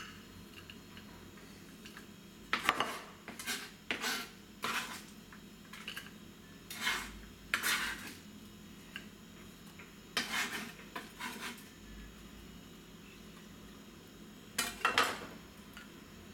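Chef's knife scraping diced onion off a plastic cutting board into a glass bowl: intermittent scrapes and clinks of the blade on board and glass, with quiet gaps between.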